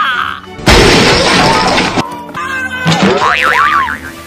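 Comic sound effects over background music: a loud crash-like burst of noise starting about half a second in and lasting over a second, then wobbling, zigzagging pitch glides near the end.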